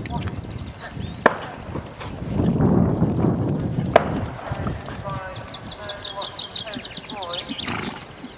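A horse trotting on turf, its hoofbeats soft and muffled, with two sharp clicks and a louder low rumble in the middle.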